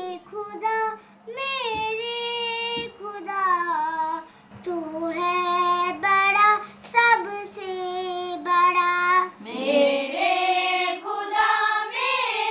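A young girl singing solo, unaccompanied, in short held phrases with breaths between them. Near the end other girls' voices join in and the singing becomes fuller.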